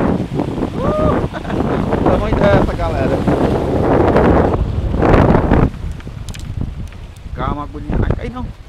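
Strong wind buffeting the microphone over the wash of surf breaking on the rocks. The wind eases off suddenly about two-thirds of the way through, leaving the surf.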